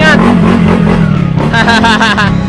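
Yamaha NMAX scooter's single-cylinder engine, bored out to 180cc with a racing CVT setup, being revved in place, its pitch wavering up and down with the throttle.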